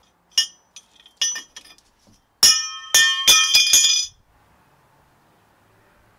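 Loose metal wheel-fitting parts clinking and ringing: a few light clicks, then from about two and a half seconds a run of loud ringing metallic clanks, which stops about four seconds in.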